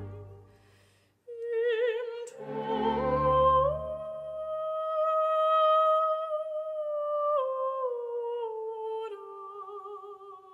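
Operatic soprano singing a slow aria with wide vibrato over soft orchestral accompaniment. After a brief break about a second in, she holds a long high note and then steps down in pitch.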